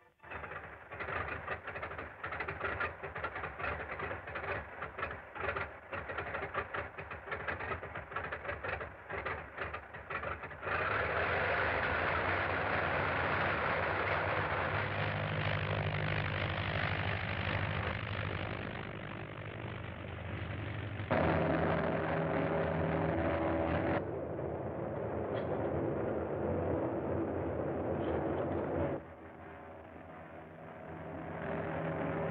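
A biplane's propeller engine, running first with a rapid, choppy beat for about ten seconds, then switching to a steady, louder run as the plane takes off and climbs. The sound changes abruptly several times.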